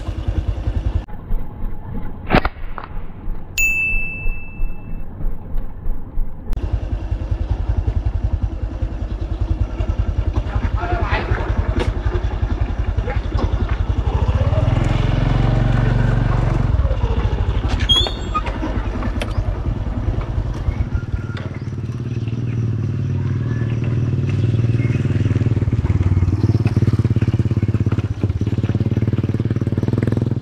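Small motorcycle engine running steadily while riding along a dirt track, its note rising and swelling about halfway through before settling again.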